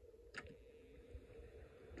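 Near silence with one faint click about a third of a second in: a Snap Circuits switch being switched on.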